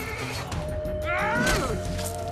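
A horse whinnies once, a little past halfway through, over dramatic background music with a long held note and a low rumble underneath.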